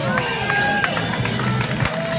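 Music played through a small portable loudspeaker for a street dance, with a steady bass line under sliding high tones and short sharp beats.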